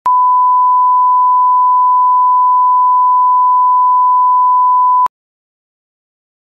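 A steady 1 kHz reference test tone, the line-up tone that goes with colour bars, lasting about five seconds and cutting off abruptly.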